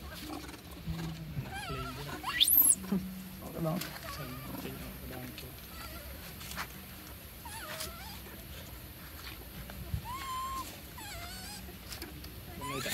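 Long-tailed macaques giving shrill squeals and squeaks. The loudest is a sharply rising scream about two and a half seconds in, and shorter wavering squeaks follow later.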